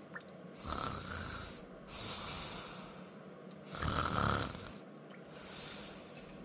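A person snoring: two long snores about three seconds apart, with a softer breath between them.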